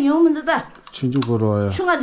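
Speech only: a woman talking in a small room.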